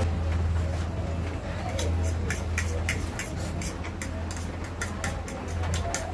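Irregular short clicks and smacks of someone eating noodles, chewing and working a fork on a plate, over background music with a steady low hum.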